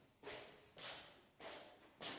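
Faint, evenly spaced swishing steps, a little under two a second: slow shuffling footsteps on a stone floor.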